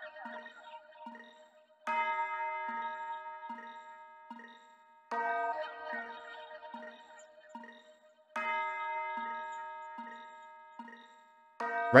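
A sparse synthesized accent loop of one-shot sounds: a soft bell, a church bell, a delay flute and a short repeating pluck. A ringing bell-like strike lands three times, roughly every three seconds, each one fading out, while the short pluck note ticks along steadily underneath; without the bass it sounds super messy.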